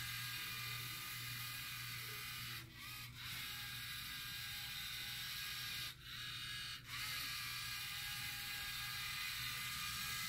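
LEGO Mindstorms EV3 robot's geared drive motors whirring steadily as it drives, with short breaks about 3 s in and again about 6 s in.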